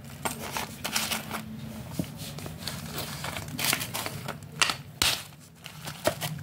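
Pieces of dry black slate clay being broken apart: a series of sharp cracks and snaps with crumbling rustle, irregular and heaviest about two thirds of the way through.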